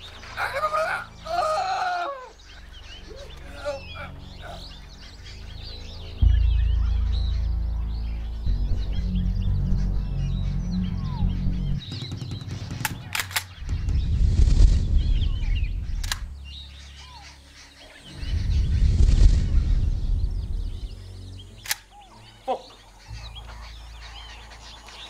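Film score: a low, sustained music bed that starts abruptly about six seconds in and swells twice, over steady birdsong. A few sharp clicks cut through it.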